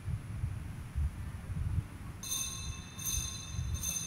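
Low, uneven rumbling and thumping, with a high ringing chime struck three times, a little under a second apart, starting about two seconds in.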